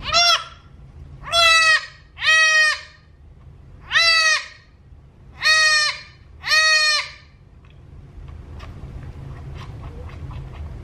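A newborn Nigerian Dwarf goat kid bleats six times in quick succession, each call short and high-pitched, while it is being bottle-fed and not taking the nipple.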